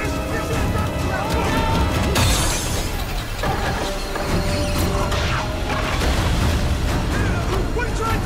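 Film soundtrack of a small lifeboat in a storm: music over heavy surf noise, with a loud crash about two seconds in.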